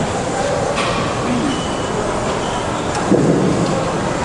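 Steady rushing noise of a gym's large ceiling fans blowing, with a few faint clinks and a brief louder sound about three seconds in.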